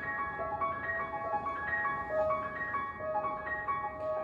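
Solo grand piano playing a flowing melody, single notes moving every fraction of a second over held chords.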